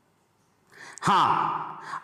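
A man's audible in-breath, then a short spoken 'haan' that falls in pitch, and another quick breath near the end.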